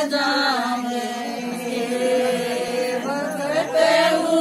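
A group of women singing a Haryanvi folk song together in long, held notes that glide from one pitch to the next.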